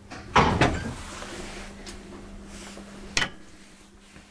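An elevator door shutting with a loud clatter about half a second in, then one sharp click about three seconds in, over a faint steady hum.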